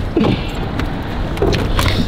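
A car door being opened and someone climbing into the seat: a few short knocks and handling rustles over a steady low hum.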